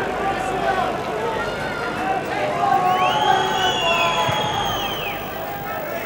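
Football stadium crowd noise, a steady mass of voices. About three seconds in, several long whistles rise, hold for about two seconds and fall away together.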